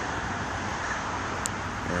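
Steady outdoor background noise of distant road traffic, with one short, high tick about one and a half seconds in.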